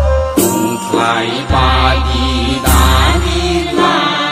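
Bodo Bathou devotional song (aroz): a chanted vocal line over a deep, pulsing bass, taking over from a flute melody about half a second in.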